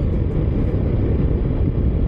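Motorcycle riding at road speed: a steady low rush of wind and engine noise heard through the rider's own microphone, without any distinct engine note.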